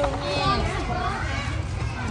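Several people talking at once: lively chatter of young voices in a crowd, with no single clear speaker.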